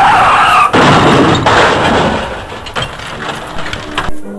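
A loud offscreen commotion: a burst of harsh noise, strongest at first, that fades away over about two and a half seconds.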